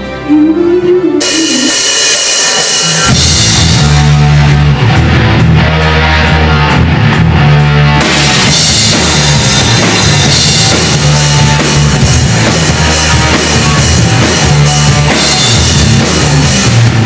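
Live hard rock band playing loud, with no vocals: a held note opens, then drum kit and cymbals crash in about a second in. Distorted guitar and bass then lock into a heavy low riff, with another cymbal-heavy surge about halfway through.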